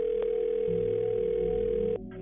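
Telephone ringback tone over a phone line while a 911 call is transferred to another dispatcher: one steady ring lasting about two seconds, cut off sharply near the end.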